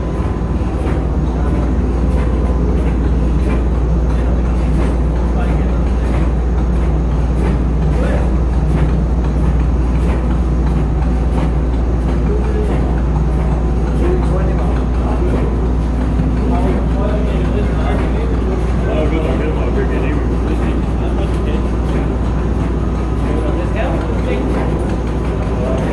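Heinrich Lanz stationary steam engine running with a loud, steady low drone, with voices murmuring faintly in the background.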